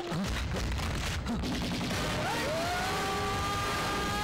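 Rapid, dense gunfire sound effects of a film gunfight, running steadily. About halfway through, long sliding tones of background music come in over it.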